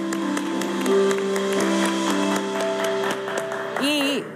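Hands clapping in applause over music of held notes that shift in pitch; the music cuts off near the end.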